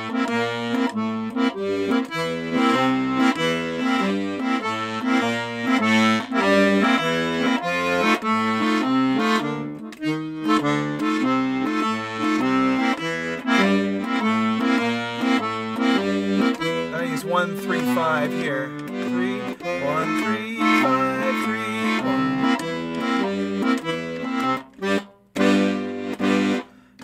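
Petosa piano accordion playing a blues walking bass line in C on its left-hand bass buttons, each bass note followed by a C7 chord in a steady alternating rhythm. The playing pauses briefly about ten seconds in and stops near the end.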